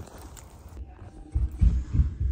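Faint hiss, then from about one and a half seconds in a few loud, low thumps and rumbles of handling noise on the microphone.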